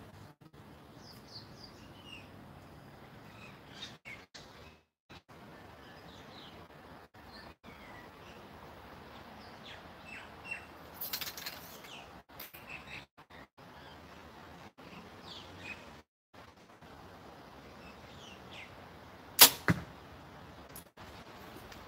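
A compound bow shot near the end: one sharp, loud crack of the string's release. Before it there are faint bird chirps and a brief soft hiss about halfway.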